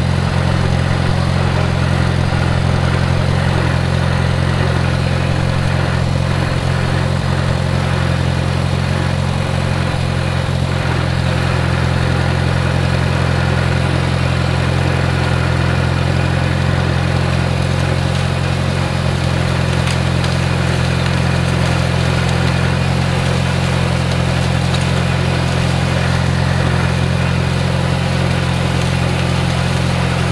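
Farmall 140 tractor's four-cylinder engine running at a steady speed while the tractor drives: a constant low drone that does not change in pitch or level.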